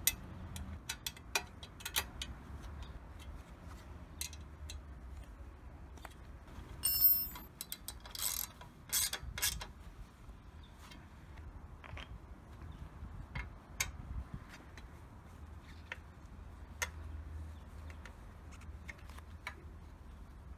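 Hand-tool work on a motorcycle exhaust heat protector: a 4 mm hex-bit ratchet turning the shield's screws, giving scattered small metallic clicks and taps, with a louder stretch of clatter between about seven and ten seconds in.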